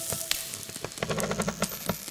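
Crackling, hissing noise with scattered sharp clicks over a faint low drone: a sparse noise break in an experimental electronic hip-hop instrumental.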